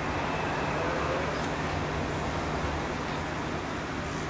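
Steady low rumble and hum of a train approaching in the distance, mixed with the noise of road traffic.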